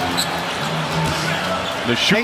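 A basketball being dribbled on a hardwood court, over a steady hum of arena background sound.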